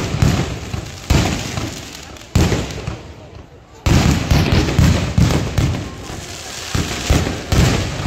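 Fireworks going off in loud bangs, each dying away over a second or so: single bangs about every second and a half, then a dense run of rapid bangs from about four seconds in.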